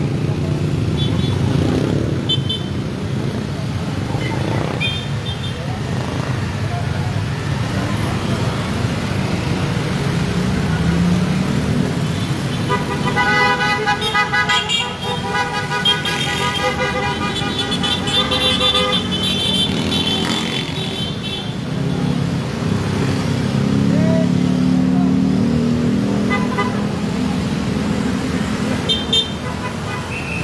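Vehicle horns honking in repeated short toots over a steady rumble of engines and road noise, with voices mixed in. A long run of honking comes about halfway through.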